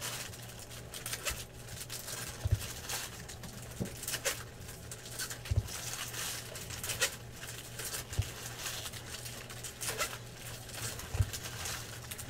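Trading cards handled by hand: irregular soft clicks and taps as cards are flipped and set down on a stack, with rustling of opened foil pack wrappers, over a low steady hum.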